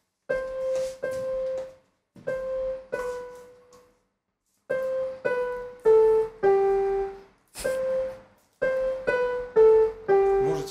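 Electronic keyboard on a piano sound, played one note at a time: a beginner picking out a simple tune by ear in four short, halting phrases with pauses between. The later phrases step downward note by note.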